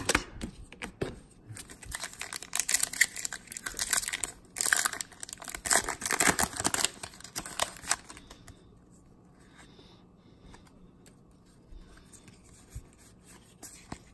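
A foil Pokémon booster pack is torn open and its wrapper crinkled, in irregular bursts for about the first eight seconds. After that there are only faint rustles as the cards are handled.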